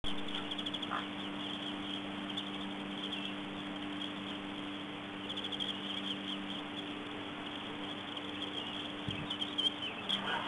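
Outdoor webcam microphone ambience: a steady low electrical hum under hiss, with faint high chirping in short runs now and then.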